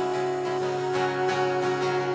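Live acoustic guitar strumming under a woman's voice holding one long sung note in a gentle children's song.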